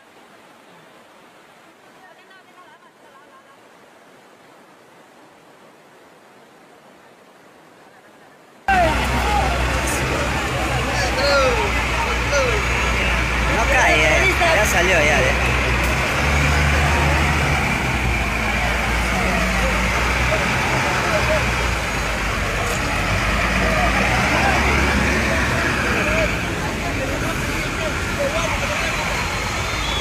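A faint steady rushing noise for about the first nine seconds. Then a sudden cut to loud heavy diesel engines running low and steady, with people shouting over them.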